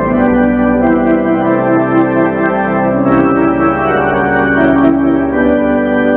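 Church organ playing slow, sustained chords that change every second or two.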